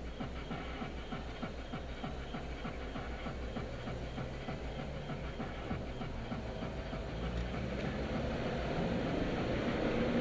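Car engine and road noise heard from inside the cabin. It idles with a fast patter of ticks, then grows louder from about seven seconds in as the car pulls away and speeds up.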